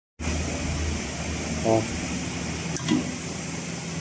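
A steady low machinery hum with no stitching rhythm, broken by a short spoken "oh" about a second and a half in and a light click near three seconds.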